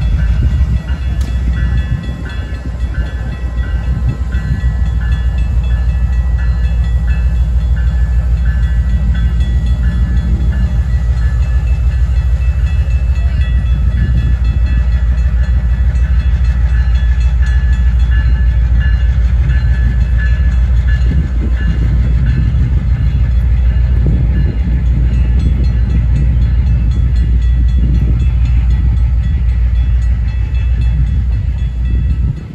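Diesel locomotive pulling a passenger train away from the station, its engine running with a loud, steady low rumble as the coaches roll past. A repeated high ringing sounds through the first half.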